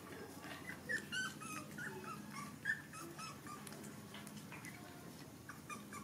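Young puppies whimpering in short, high-pitched squeaks, a quick run of them in the first three seconds and a few more near the end, over a low steady hum.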